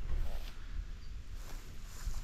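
Wind rumbling on the microphone: a steady low rumble with a faint even hiss above it.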